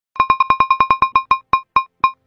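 A rapid run of identical short electronic beeps, all on one pitch, about ten a second at first and slowing steadily to two or three a second.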